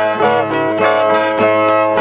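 Two violas strummed in a steady rhythm with ringing chords, the instrumental break between sung verses of a repente.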